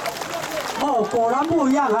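Mostly speech: a voice talking over a microphone, coming in about a second in after a short stretch of crowd noise.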